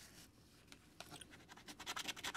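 A coin scratching the coating off a scratch-off lottery ticket. It is quiet at first, then rapid back-and-forth strokes start about a second in and get louder.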